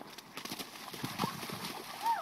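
Children's feet running and splashing through a shallow puddle of snowmelt: a quick, uneven run of splashes.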